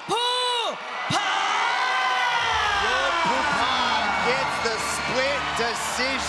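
An announcer's amplified voice drawing out the winner's name in long, stretched calls. From about two and a half seconds in, shorter calls continue over a low steady rumble.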